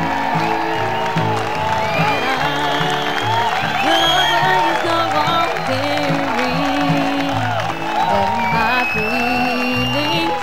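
Live bluegrass band playing an instrumental break: fiddle, acoustic guitars, banjo, mandolin and upright bass, with melodic lines sliding in pitch over a steady, even bass rhythm.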